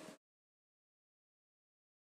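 Silence: the soundtrack goes dead just after the start, with nothing to be heard from the hand drilling.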